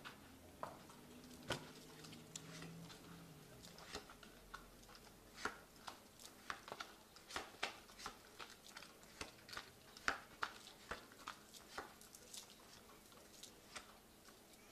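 Faint, irregular clicks and soft taps as tarot cards are drawn from the deck and laid down one by one on a cloth-covered table, with beaded and metal bracelets clicking against each other as the hands move; the taps come more often from about a third of the way in.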